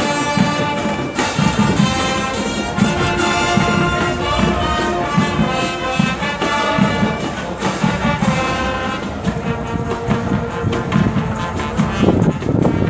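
Brass marching band playing a tune, with a brass melody over a steady drum beat.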